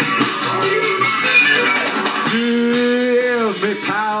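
Live new wave rock band playing electric guitars, bass and drums. About halfway through, a long held note comes in and bends down in pitch near the end.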